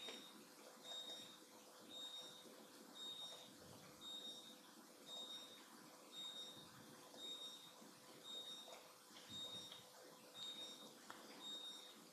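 Near silence: room tone with a faint, high-pitched electronic beep repeating about once a second over a faint steady hum.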